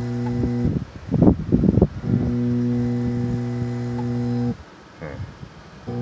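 Pond aeration air pump humming steadily, then cutting out and starting up again twice: it is power-cycling on and off at regular intervals. A loud irregular rattle fills the first break of about a second and a half.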